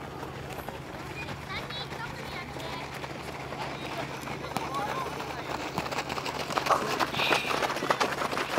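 Children's voices shouting and calling across a youth football match, with scattered short knocks that grow denser and louder in the last couple of seconds.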